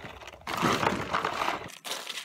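Poultry feed bag crinkling and rustling as it is handled and held open, about half a second to one and a half seconds in.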